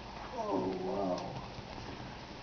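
A cat's single wavering meow, drawn out for about a second.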